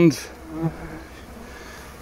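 Honeybees buzzing faintly at a hive entrance, a steady low hum that swells briefly as a bee flies close about half a second in. The colony is being robbed, with bees fighting at the entrance.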